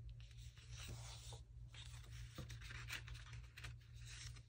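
Sheets of printed paper rustling and sliding against one another as they are leafed through by hand, faint, with a few soft ticks. A low steady hum runs underneath.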